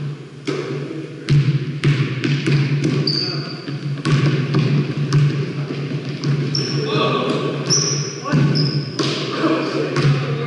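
A basketball bouncing again and again on a hardwood gym floor, with short high sneaker squeaks, in a large reverberant gymnasium.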